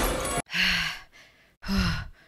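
Loud film soundtrack that cuts off sharply about half a second in, followed by a woman sighing twice: two short, breathy exhales, the second with a little voice in it.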